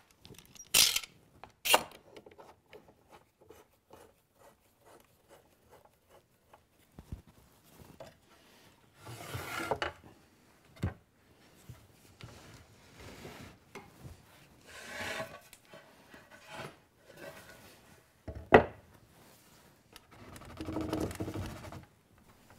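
Hardwood table legs and rails being dry-fitted, tenons rubbing and scraping into their mortises, with small clicks and a few sharp wooden knocks, the loudest about 18 seconds in.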